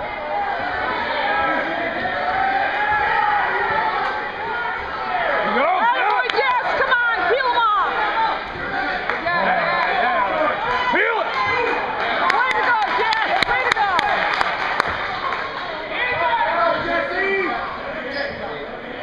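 Spectators in a gymnasium shouting and cheering, many voices overlapping. It gets louder about six seconds in and again around twelve to fifteen seconds.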